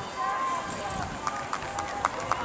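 A high jumper's quick running footfalls on the track during her approach, a short series of sharp steps in the second half, with voices in the background.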